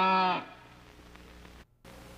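A held, moo-like animal call voiced for a cartoon, ending about half a second in, followed by faint hiss and a brief moment of dead silence near the end.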